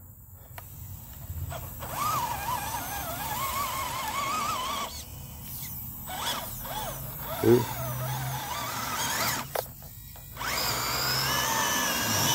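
Whine of the small electric motors and gears of a Redcat Gen8 V2 radio-controlled crawler (the drive motor, with the winch winding too) working the truck through mud. The pitch wavers with the throttle, in three stretches with short pauses between them, and rises higher near the end.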